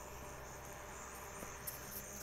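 Crickets chirping steadily at night, a faint continuous high-pitched trill.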